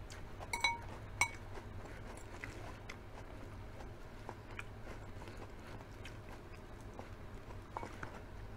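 A metal fork clinking twice against a ceramic bowl about half a second and a second in, then soft close-miked chewing and small clicks as the fork picks through salad, with another light clink near the end.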